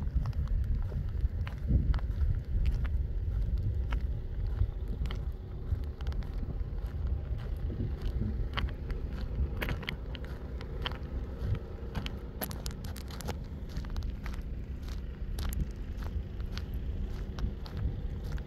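Steady low rumble of a car driving: engine and road noise.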